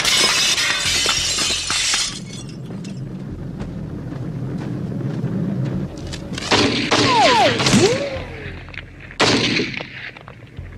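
Film soundtrack: a pistol fired through a window pane and glass shattering, loud for the first two seconds. After a quieter stretch comes a loud noisy passage around seven seconds in, with a cry that falls in pitch, and another sudden loud burst near the end.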